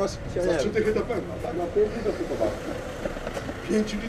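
Men talking in a conversation with words that cannot be made out, over the low rumble of a vehicle engine.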